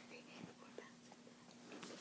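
Near silence: room tone with a few faint small ticks.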